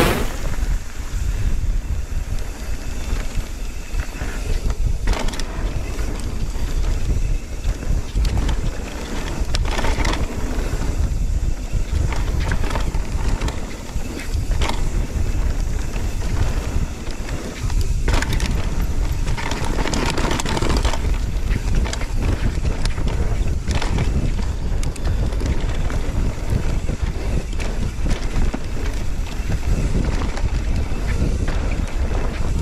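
Wind rushing over an action camera's microphone as a mountain bike is ridden down a dirt forest trail, with a steady low rumble of tyres on dirt and occasional knocks and rattles from the bike over bumps.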